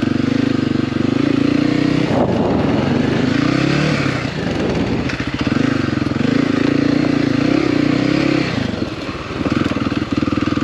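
Dual-sport motorcycle engine pulling at low speed over a rocky dirt trail, the pitch rising and falling with the throttle. The engine eases off with a short clatter about two seconds in, and again near the end before picking back up.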